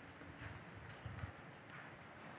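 Faint footsteps on grass: two soft low thuds, the second a little louder, with faint high ticks in the background.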